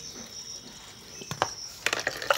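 A faint, steady, high-pitched insect trill, with two light clicks of a metal pot being handled, one a little past halfway and one near the end.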